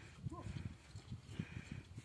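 Faint, irregular low thuds of horses moving through snow, with a short pitched call about a third of a second in.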